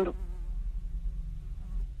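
Low steady electrical hum, a buzzing drone in the recording's background.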